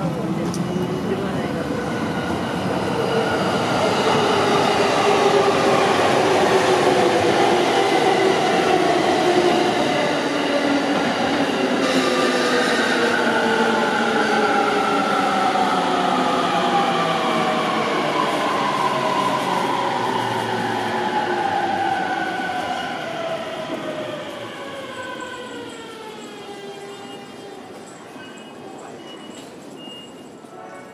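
Electric train slowing down on the tracks: its motor whine, several tones together, falls steadily in pitch for about twenty seconds, loudest in the first half and fading toward the end.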